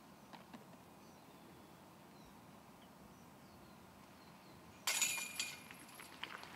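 Quiet outdoor ambience with faint bird chirps. About five seconds in, a putted golf disc strikes the chains of a disc golf basket: a sudden metallic chain rattle and jingle that rings briefly and settles with a few lighter clinks. This is the sound of a made putt.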